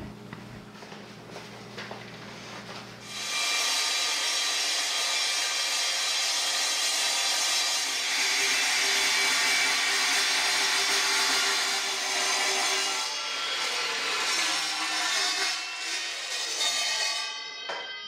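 Steel-cutting miter saw blade cutting through 4-inch square steel tube. After about three seconds of quiet it cuts with a loud, high ringing sound that holds until it drops away near the end. This is the first of two passes, because the tube is deeper than the saw's cutting capacity.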